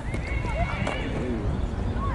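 Women's voices shouting short calls across a football pitch, one long high call in the first second, over wind rumbling on the microphone.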